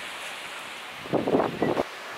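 Wind buffeting the microphone over a steady wash of surf, with a short, louder rough burst lasting under a second about a second in.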